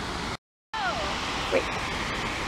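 Steady rush of falling water from a mini-golf course's artificial waterfall, cut off briefly by a short gap of silence under a second in, then resuming.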